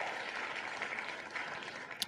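Recorded crowd applause, the winner sound effect of the Wheel of Names web page, playing quietly and slowly fading.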